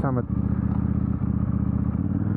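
KTM 890 Duke R parallel-twin engine running at a steady cruise while the bike is ridden, heard from the rider's seat.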